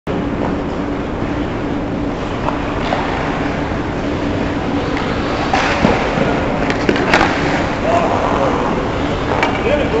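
Ice hockey play close to the net: skates scraping on the ice and sticks and puck clacking, with a run of sharp knocks between about five and a half and seven seconds, and players' voices shouting, over a steady low hum.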